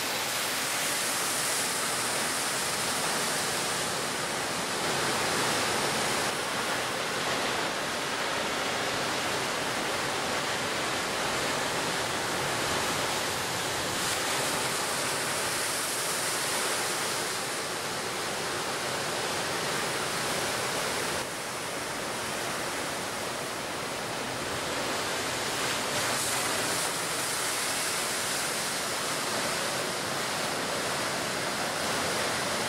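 Steady rush of sea waves, rising and easing in slow swells, with a slight drop in level about two-thirds of the way through.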